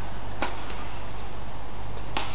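A badminton racket strikes the shuttlecock once, a sharp crack about half a second in, during a doubles rally, over a steady low hum.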